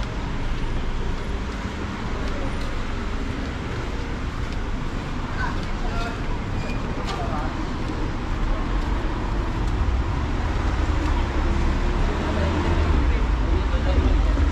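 City street ambience heard from the sidewalk: a steady wash of traffic on the road alongside, with indistinct voices of passersby. A deeper rumble builds in the second half.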